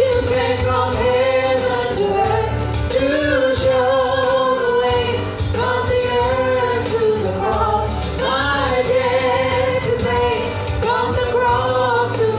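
A man and a woman singing a gospel praise song into microphones through the PA, over instrumental accompaniment with a heavy bass line.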